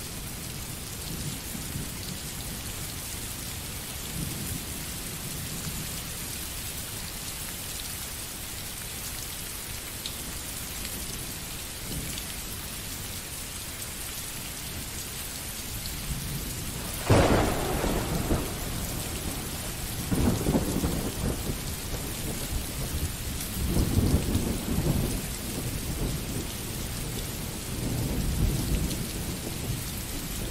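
Steady rain falling, with a sudden thunderclap a little past halfway, the loudest moment, followed by several rolling rumbles of thunder.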